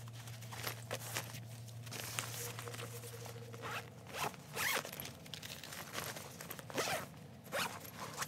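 Bag zipper pulled in several short quick strokes, the loudest about halfway through and again near the end, with light handling of books and school things as a bag is packed.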